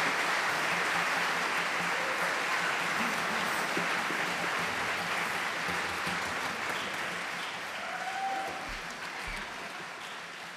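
Audience applauding in a concert hall, the clapping slowly dying away.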